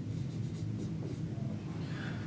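Dry-erase marker writing on a whiteboard: a few short strokes in the first second or so, over a steady low room hum.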